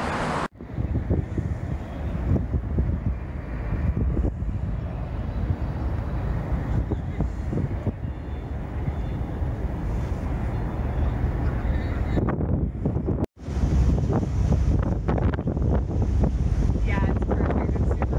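Wind buffeting a camera microphone outdoors: a steady low rumble, cut off abruptly twice where the footage changes, about half a second in and again around thirteen seconds.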